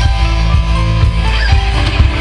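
Live band playing loud amplified music on electric guitars, keyboard, bass and drums, with a steady drum beat under held guitar and keyboard notes.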